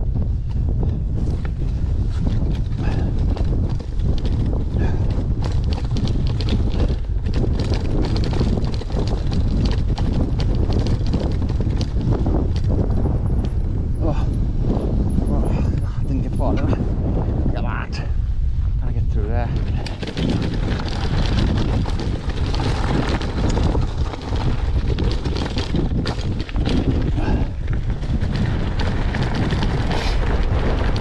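Cannondale mountain bike clattering and rattling over rocky, uneven ground, with a constant rumble of wind buffeting the handlebar camera's microphone.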